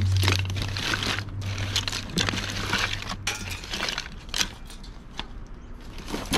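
Wooden bead garlands and other odds and ends being handled in a cardboard box and wicker basket: irregular clacks, clinks and rustles as items are picked up and moved. A steady low hum runs underneath and stops about halfway through.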